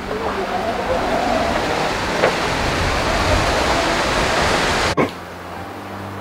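Steady rushing noise with a faint voice beneath it, growing a little louder and then cutting off suddenly about five seconds in, leaving a low steady hum.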